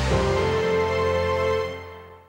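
Closing theme music of a television cooking show ending on a sustained final chord that fades out near the end.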